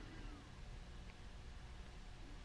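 Faint room tone: a low, steady rumble with light hiss.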